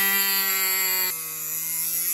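Dremel rotary tool with a cut-off disc whining at a steady high pitch as it cuts a plastic sun-visor mounting tab; about a second in the pitch and level step down.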